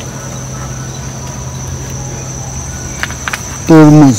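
A steady, high, even insect drone, like crickets, with a low steady hum beneath it. Near the end a man's voice comes in briefly and loudly, falling in pitch.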